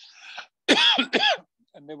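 A man coughing twice in quick succession, two short throat-clearing hacks about a second in, after a faint breath in.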